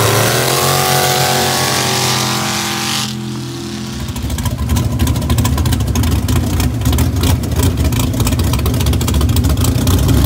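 A mud drag racing vehicle's engine at high revs, falling in pitch over the first second as the throttle comes off. From about four seconds in it runs at a low, rough, uneven idle with a rapid ticking patter.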